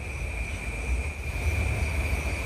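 Steady high-pitched chirring of crickets over a low, even rumble.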